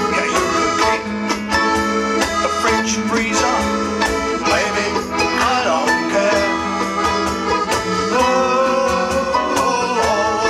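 A live folk band playing an up-tempo number with a steady beat: accordion, bass guitar and electric guitar with percussion and brass, in a passage with no sung words.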